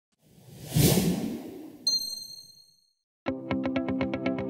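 Intro sound effects: a whoosh that swells up and peaks about a second in, then a bright ding about two seconds in that rings away. Background music with a steady beat starts near the end.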